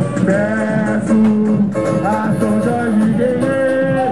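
Samba school parade music: a samba-enredo sung over strummed strings and the percussion of the drum section, loud and continuous.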